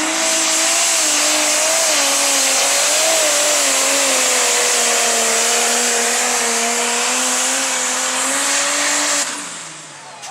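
Diesel pulling tractor's engine running flat out under load while dragging a weight-transfer sled, its note sagging and recovering slightly over a loud high-pitched hiss. About nine seconds in the engine drops off sharply as the throttle is cut at the end of the pull.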